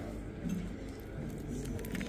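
Faint background voices of a restaurant dining room, with a few small clicks.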